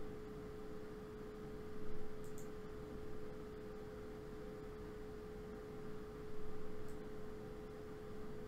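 A steady, faint single-pitched tone, held unchanged like a pure electronic hum over a low background hiss, with two faint soft swells of noise about two and six seconds in.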